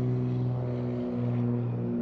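Single-engine propeller light airplane running with a steady, low engine-and-propeller drone, dipping slightly about a second in.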